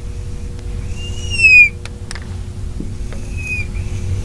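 Marker squeaking on a glass lightboard as the sides of a square are drawn: one long high squeak about a second in, a shorter, fainter one near the end, and a few light taps of the marker between. A steady low hum runs underneath.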